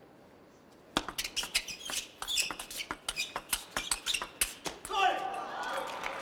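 A table tennis ball clicking rapidly and irregularly off the bats and the table during a rally. Near the end comes a burst of crowd noise as the point ends.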